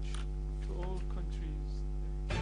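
Steady electrical mains hum: a low buzz of many evenly spaced steady tones, with a faint voice briefly audible underneath.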